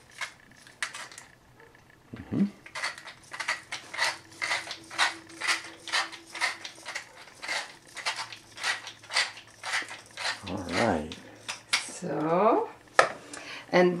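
Hand-twisted pepper mill grinding peppercorns: a steady run of crunching clicks, about two to three a second, stopping shortly before the end.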